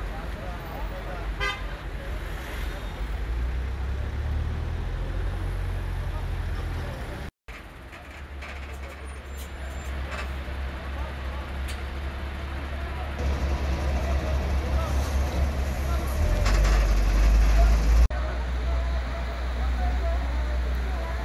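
Outdoor scene at a building fire: a heavy low rumble of wind on the microphone, with background voices and vehicle horns sounding. The rumble swells near the end, and the sound drops out briefly about seven seconds in.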